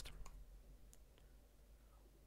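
Near silence, with a few faint, isolated computer keyboard clicks as the last keys of a typed entry are pressed.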